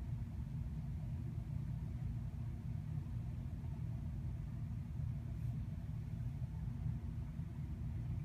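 A steady low background rumble with no clear events in it.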